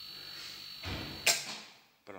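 Homemade 5-litre silent air compressor running with a low hum, then its pressure switch cutting out about a second and a quarter in with a sharp click and short hiss, the motor winding down to near silence: the tank has reached cut-out pressure.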